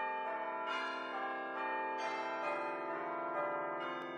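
Bells ringing a slow run of notes, each struck note ringing on and overlapping the next.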